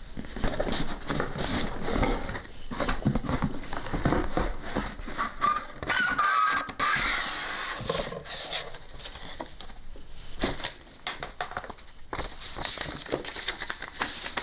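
A CPU liquid cooler's retail box and packaging being opened and rummaged through by hand: irregular rustling and scraping of cardboard and wrapping, with scattered sharp taps and knocks.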